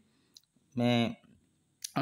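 Two short clicks in a pause of a man's narration: a faint one about a third of a second in and a sharper, louder one near the end.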